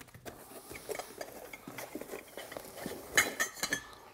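Lengths of black aluminium extrusion clinking and knocking against one another as they are handled and set down, with a louder flurry of clatter about three seconds in.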